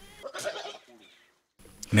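A Mubende goat bleating faintly and briefly in the first second.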